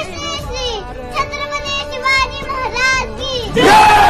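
A young girl's high voice shouting a chanted recitation of royal titles in long, drawn-out phrases. Near the end a crowd breaks in with a loud shout.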